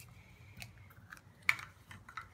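A few small clicks and taps of a metal spoon in a ceramic bowl and a small plastic container being handled on a tabletop, the sharpest click about one and a half seconds in.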